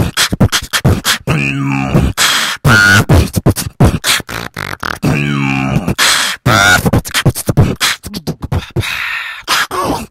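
Beatboxing through a wireless microphone built into a carbon-fibre mask: fast percussive mouth sounds throughout, with a long, low, pitched bass note about a second in and again about five seconds in, so the phrase repeats.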